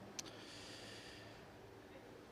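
A short mouth click, then a faint breath in from a man pausing between sentences, over low room tone.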